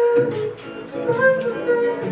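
Live acoustic music: an acoustic guitar with a voice holding long notes in two short phrases.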